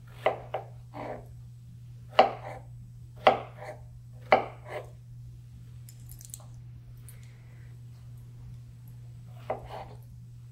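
Kitchen knife slicing strawberries on a wooden cutting board: sharp chops in quick pairs about once a second for the first five seconds, then a few faint sounds of slices dropped into a glass pitcher of water, and two more chops near the end.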